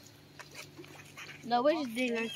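A short wavering vocal sound, its pitch rising and falling, about three-quarters of the way in, after a quiet stretch with a few faint ticks.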